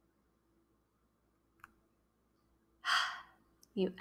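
A person's audible breath out, a short sigh about three seconds in, after a near-silent pause. A faint click comes shortly before the sigh.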